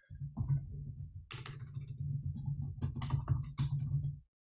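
Typing on a computer keyboard: a quick run of keystrokes with a brief pause about a second in.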